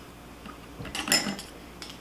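Scissors handled over a cutting mat: a few faint clicks and one sharper metallic click just after a second in.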